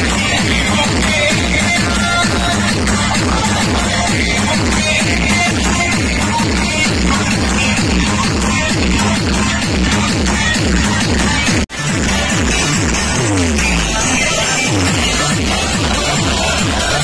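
Loud electronic dance music with a dense, heavy bass beat from a truck-mounted DJ speaker stack. About two-thirds of the way in the sound cuts out for an instant, and a falling bass sweep follows.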